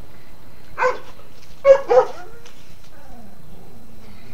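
Three short, sharp vocal calls: one a little under a second in, then two close together at about a second and a half to two seconds, the loudest of the three.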